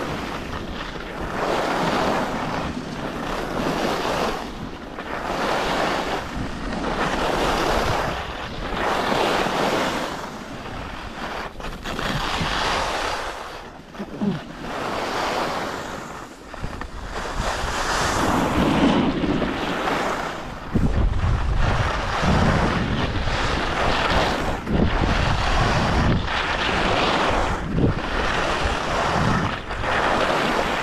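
Alpine skis (Salomon S/Force) carving turns on firm, chopped-up piste snow: the edges scrape in swells every second or two, one per turn. Wind buffets the microphone throughout, with a heavier low rumble in the second half.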